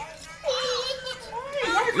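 Children's voices in the background, with one child's voice held on a single pitch for about a second in the middle.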